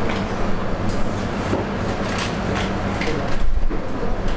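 Steady low hum and hiss of the room, with scattered light clicks and rustles; a thin high whine comes in near the end.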